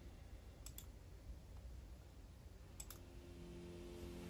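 Two computer mouse clicks, about two seconds apart, over faint room tone.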